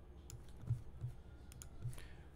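Several faint, sharp computer mouse clicks, a few with a dull low thud, over a steady low electrical hum.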